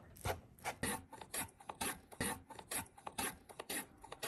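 Radish being sliced on a mandoline slicer: quick rasping strokes across the blade, about three a second.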